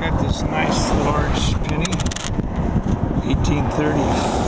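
Wind rumbling on the microphone, with a burst of crackling handling noise in the middle.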